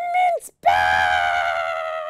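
A high-pitched voice holding long notes: a short steady cry, a brief break, then a long wavering one that slowly sinks in pitch, like an excited squeal or sung 'ooh'.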